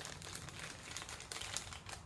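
Foil wrapper crinkling and crackling as a small toy figure is unwrapped from it by hand, many quick irregular crackles that stop near the end.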